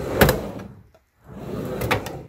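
Two whoosh transition sound effects over a title card: one peaking just after the start and fading out, with a moment of silence, then a second whoosh swelling up to a peak near the end.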